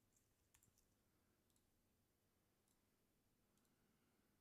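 Near silence, broken by a few faint computer mouse clicks.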